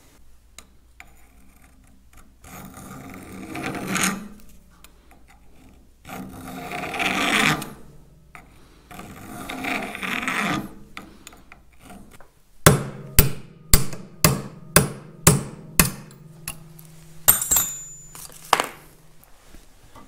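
A hand file rasping across a peened-over steel cross pin in three long strokes. Then about a dozen sharp hammer blows on a punch, roughly two a second, with a metallic ring after them: the blows drive the pin out of the plunger knob.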